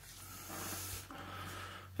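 Quiet room tone: a steady low hum with faint breathing close to the microphone, swelling a little about half a second in.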